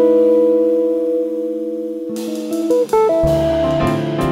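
Jazz quartet playing live, a semi-hollow electric guitar leading over piano, double bass and drums. A chord rings for about two seconds, then about three seconds in the band moves to a new chord with bass notes and light cymbal strokes.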